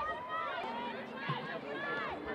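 Overlapping voices of several people calling out and chattering around a soccer field during play.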